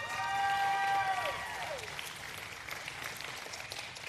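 Audience applauding, with one long cheering call from a crowd member over the first couple of seconds.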